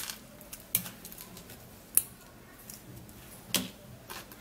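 Dried negro pepper (uda) pods being plucked off their stalks by hand: four sharp snapping clicks, one every second or so, over faint handling rustle.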